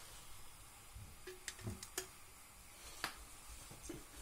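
A camping cook pot being lowered and set onto a wire pot stand over a lit meths stove: a few faint, light metallic clicks and taps.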